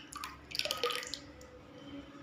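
Liquid pouring and dripping from a steel vessel into a clay pot of ragi porridge. The small splashes are busiest about half a second in, then thin out to a few drips.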